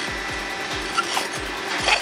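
Rusted steel threads grating and rubbing as a heat-loosened fitting is turned by hand out of a cast-iron valve, with a couple of small clicks. Background music with a steady low beat runs underneath.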